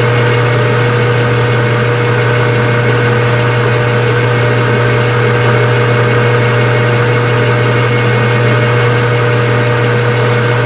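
Metal lathe running steadily, its motor humming with a steady whine over it; no cutting is heard.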